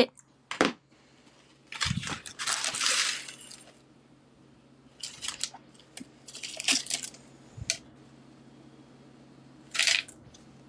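Rustling of packaging and clinks of thick pieces of broken glass tipped out onto a wooden plaque. It comes in several short bursts with pauses between, the longest about two seconds in and a sharp one near the end.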